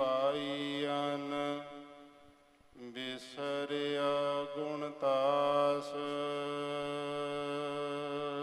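Gurbani of the Hukamnama chanted in a slow melodic style, one voice drawing out long held notes with a slight waver. It fades out briefly about two and a half seconds in, then resumes with another long sustained note.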